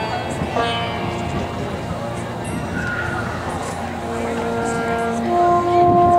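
Long held musical notes, one steady pitch after another, over the steady murmur of a stadium crowd.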